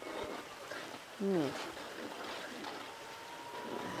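Chopped onion and garlic sizzling and bubbling in a clay pot as a sofrito is sautéed, with a soft, steady hiss and the light scrape of a wooden spoon stirring.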